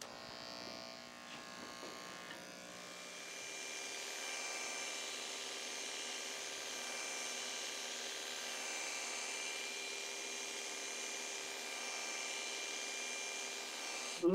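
Electric hair clippers buzzing steadily through a haircut. The hum gets a little louder after about three seconds.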